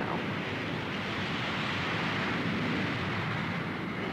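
Jet engines of a Boeing B-52 bomber at takeoff power during its takeoff roll, a steady rushing noise that holds at one level.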